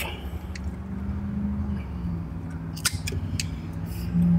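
A rubber vacuum hose being trimmed with a hand cutting tool: a few short sharp clicks, one about half a second in and two close together near the end, over a low steady hum.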